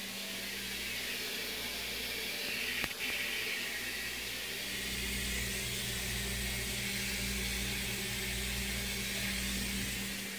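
Water hissing steadily as it sprays from a leaking copper ice-maker supply line into plastic buckets, with a low steady hum underneath.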